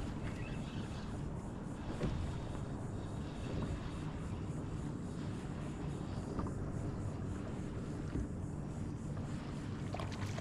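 Steady low rumble of wind on the microphone, with water lapping at the plastic hull of a small jon boat and a few faint clicks.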